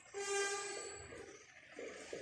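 A whiteboard marker squeaking as it writes on the board: one short, steady, pitched squeal lasting under a second, then fainter scratching strokes.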